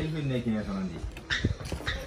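A person's voice making a drawn-out wordless sound that falls in pitch, followed by a few short noisy sounds.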